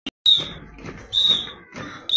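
A whistle blown in short, high blasts about once a second, a steady beat that keeps the marching step of a column of schoolchildren, over low street noise.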